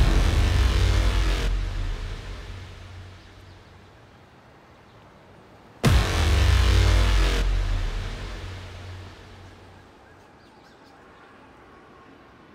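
Dramatic background-score stings. The deep, low rumbling tail of one sting fades over the first three seconds. About six seconds in a second sting lands as a sudden loud hit, then swells into a deep low rumble that dies away by about nine seconds.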